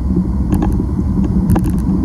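Steady road and engine noise heard inside a car's cabin at highway speed, a low drone with a steady hum, with a few faint clicks about halfway through.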